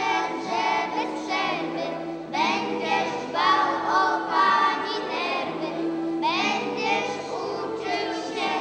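A group of children singing a song together, with new phrases starting about two seconds in and again about six seconds in.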